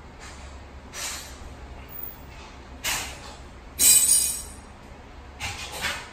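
A lifter's forceful breaths during dumbbell floor flies, a short hissing exhale roughly every one to two seconds in time with the reps, the loudest about four seconds in.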